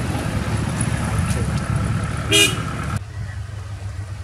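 Loaded goods truck's engine running with a low rumble, and a short horn toot a little over two seconds in; at about three seconds the sound cuts abruptly to a quieter engine running at a lower level.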